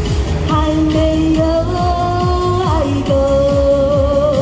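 A woman singing a Chinese pop ballad into a microphone over a backing track with a steady drum beat: a few long held notes, the last one wavering near the end.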